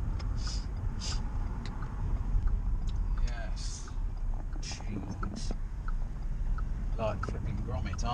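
Inside a moving car's cabin: a steady low road and engine rumble, with a few brief murmured words near the end.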